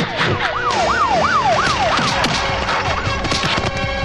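Police siren sound effect in a fast yelp, its pitch sweeping up and down about three times a second, dying away after about two seconds, with dull hits from a fight underneath.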